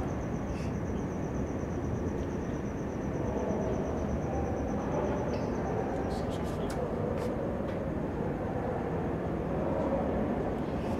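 Steady background noise of a large hall with faint, indistinct voices in it, and no clear words.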